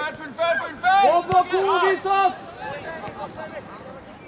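Voices shouting calls during football play, several loud calls in the first two seconds or so, then fainter voices in the background.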